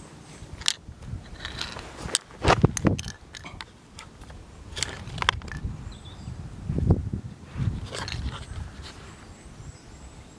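Handling noise from a handheld camera and a hand moving over gravel: irregular clicks, scuffs and low thumps, loudest about two and a half seconds in and again around seven seconds. A few faint, high bird chirps sound in the background.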